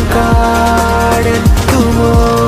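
Background music: held electronic synth chords over a deep kick drum that hits twice.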